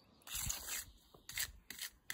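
A small steel trowel scraping and smoothing wet concrete around the base of a post, in a few separate strokes: one longer stroke early on, then shorter quick ones in the second half.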